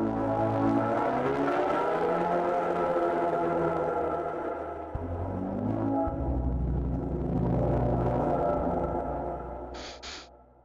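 Synthesizer pad distorted through the iZotope Trash 2 plugin, playing sustained pitched tones that bend in pitch, change note about five seconds in and again about a second later, then fade out near the end.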